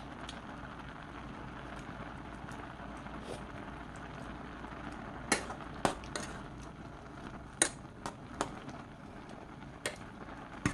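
Soybeans simmering in braising liquid in a pot, a steady bubbling, with a metal spoon clinking and scraping against the pot several times in the second half as the beans are stirred.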